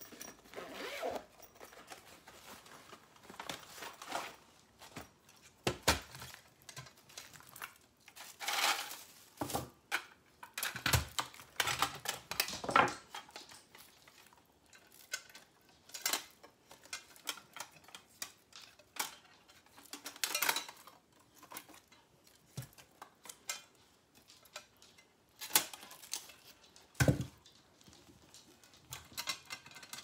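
Handling noise from unpacking and putting together a folding sheet-metal camping BBQ stove: a fabric carry bag rustling, then thin metal panels clicking, clattering and knocking on the table as they are unfolded and slotted together, with a few heavier thumps.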